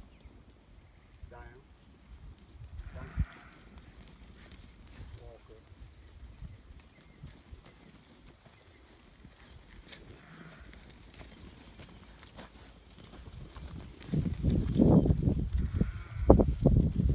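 A flock of sheep moving on dry dirt: mostly quiet, then loud, irregular hoof thuds and shuffling about two seconds from the end as the flock crowds in close.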